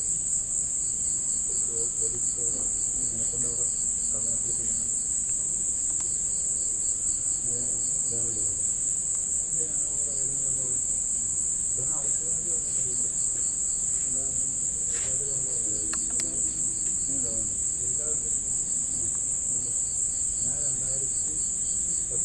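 Crickets chirping in a continuous high-pitched chorus, with faint voices underneath.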